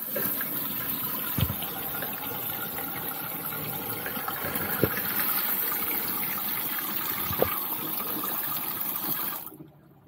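Water spraying from a pull-down faucet's spray head into a stainless steel sink: a steady rush that cuts off sharply near the end. Three short light knocks stand out along the way.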